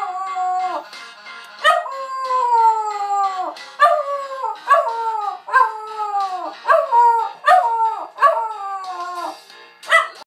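West Highland white terrier howling along to music: a long howl that slides down in pitch, then a run of shorter howls, each starting sharply and falling, about one a second.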